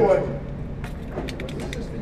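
Cartridges being pressed into a pistol magazine: several small, sharp clicks over a steady low background noise. The magazine spring is stiff.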